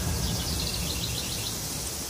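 A bird chirping: a quick run of short, high notes, about seven a second, over a low, steady rumble. It fills a lull between sections of the song.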